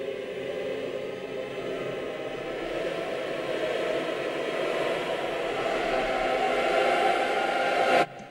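Dark ambient drone of trailer-style sound design, a dense held texture that swells steadily louder and cuts off abruptly at the end.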